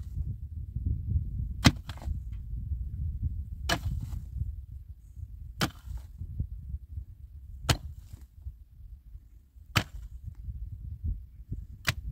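A long-handled pick striking hard, dry earth in slow, regular blows, six strikes about two seconds apart, over a steady low rumble.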